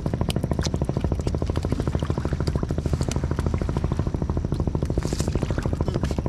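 A small engine running steadily with a rapid, even chug. A few light clicks and clatters sound over it.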